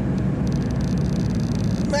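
Mitsubishi Delica L300 van driving along a street, heard from inside the cabin: a steady low drone of engine and road noise. A higher hiss joins about half a second in.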